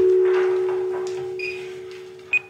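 Background music: a single sustained low tone, struck at the start and slowly fading, with a brief faint high ping partway through.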